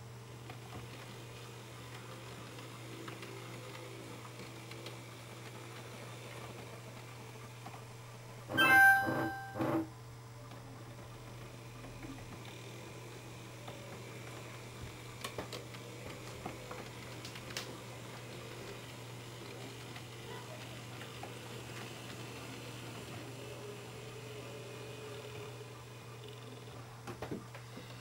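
N-scale model train running on a small layout: a faint steady hum with light ticks as the locomotive moves cars along the track. About nine seconds in comes one short, loud, two-part pitched sound.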